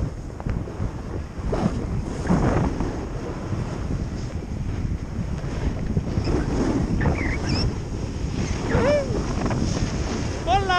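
Wind buffeting the microphone of a camera carried by a skier moving downhill: a steady low rumble that gusts louder now and then.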